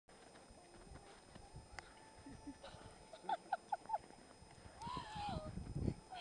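A woman's voice gives four quick high-pitched cries about three seconds in, then a squeal that rises and falls. Rustling of bodies rolling in snow follows near the end.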